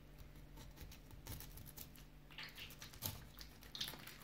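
Faint soft scraping and a few small clicks as a knife slices into the belly of a scaled sea bream.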